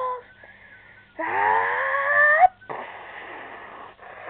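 A person's voice giving a drawn-out wail that rises steadily in pitch, starting about a second in and breaking off abruptly about a second and a half later, followed by a steady rough hiss.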